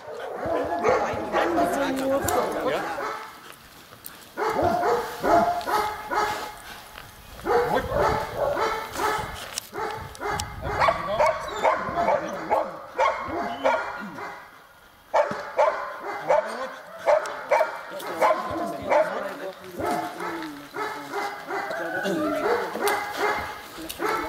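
German Shepherd dog barking and yelping in long runs of repeated calls at the protection helper, with short lulls a few seconds in and about two-thirds of the way through.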